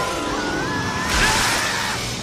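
Cartoon lightning-strike sound effect over the score: a noisy electric crackle, loudest about a second in, with a wavering high tone sliding through it.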